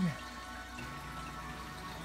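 Canon MX450-series all-in-one's flatbed scanner working through a scan: a faint, steady motor whir, with a low hum that joins about a second in.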